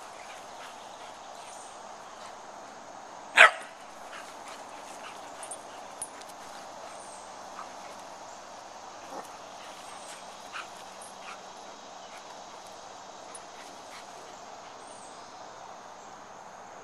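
A dog gives a single short, sharp play bark about three seconds in during rough play, over a steady faint background noise with a few small faint ticks.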